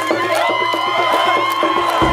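Crowd cheering and shouting, mixed with music whose long notes are held high.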